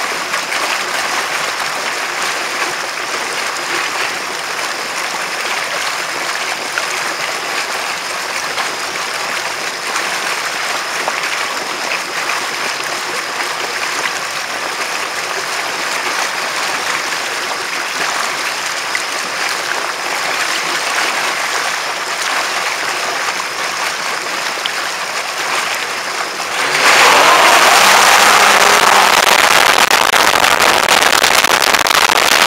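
Water rushing and hissing in the jet wake behind a Sea-Doo GTX personal watercraft cruising at low speed. Near the end the craft speeds up sharply and the sound jumps to a much louder rush of spray with a low engine drone under it.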